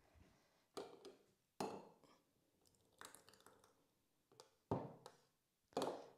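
Kitchen handling noises: about five short, soft knocks and clatters as a stainless steel Thermomix mixing bowl is carried and brought over a plastic funnel and drinking glasses. The loudest comes near the end.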